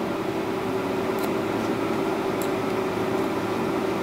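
Steady mechanical hum of a fan or air-conditioning unit with a low tone, and two faint, short snips of hair-cutting shears about a second apart.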